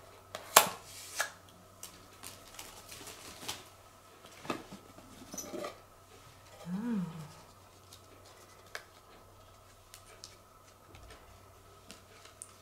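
Hard plastic packaging being handled and pried at: scattered clicks and taps, the sharpest about half a second in. About seven seconds in, a brief hummed 'hm' from the person.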